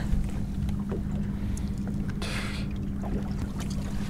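Steady low hum of the boat's motor running, with a brief hiss about two and a half seconds in.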